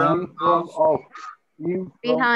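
Speech: voices over a video call repeating short single words in a drill, a few words in quick succession with a brief pause past the middle.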